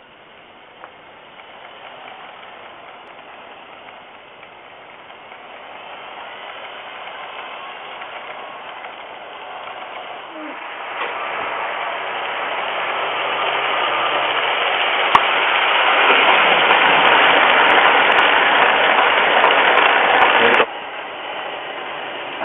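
Piko H0-scale class 95 model steam locomotive running under load with freight wagons: a steady whir of its electric motor and gears and its wheels on the track. It grows steadily louder as it comes close, with a few light clicks from the track, then drops off suddenly near the end.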